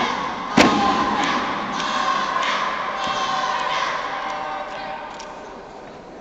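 A single sharp impact from the lucha libre wrestling about half a second in, followed by the crowd shouting and cheering, which slowly fades away.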